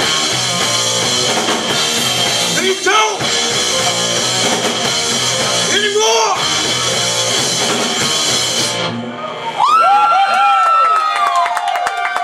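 Live rock band, electric guitars and drum kit through Marshall amps, playing loud. About nine seconds in the full band drops away, and held high notes that slide and bend in pitch ring out to the end.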